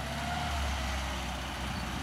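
Steyr-Puch Pinzgauer 710's 2.5-litre air-cooled four-cylinder petrol engine running steadily as the truck drives slowly towards the listener.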